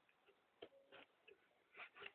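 Faint handling of a cardboard box as its lid is closed and pressed down: four soft, short taps and rustles spread over the two seconds, against near silence.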